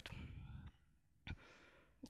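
Near silence: a soft breath out into the microphone at the start, then a single faint click a little past the middle.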